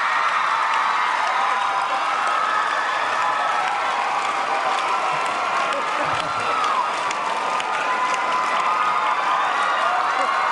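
A large audience cheering and screaming with many high-pitched voices at once, mixed with some applause, loud and unbroken.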